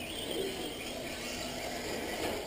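Radio-controlled off-road race cars running on an indoor clay track: a faint motor whine over steady hall ambience and tyre noise.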